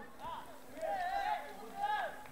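Faint, distant voices calling and shouting across an outdoor football pitch, in short scattered calls.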